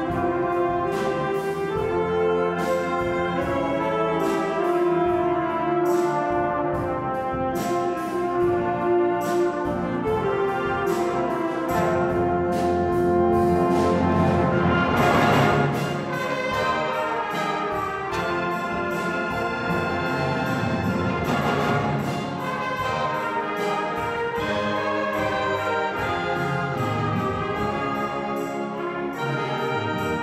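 Concert wind band of brass, saxophones, clarinets and percussion playing a slow flugelhorn solo feature, with sustained chords over regular percussion strokes. The band swells to its loudest about halfway through, then falls back.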